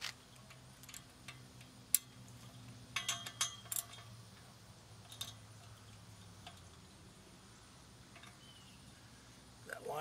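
Scattered metallic clicks and clinks of a hand tool on the fittings of a galvanized steel pipe handrail as the rail is adjusted and the fitting tightened, with a short run of clinks about three seconds in. A faint low hum lies underneath for the first seven seconds.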